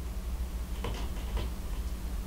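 A few faint, light clicks over a steady low hum.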